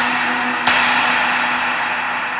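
Electronic dance track in a quiet build-up section: a held synth chord under a hissing noise wash, with a single hit about two-thirds of a second in. The hiss grows duller toward the end.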